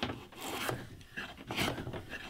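Bench plane cutting along a wooden board in several short strokes.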